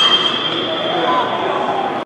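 A metal college baseball bat hitting a pitched ball: a sharp crack and a high ringing ping that hangs for about a second and a half before fading.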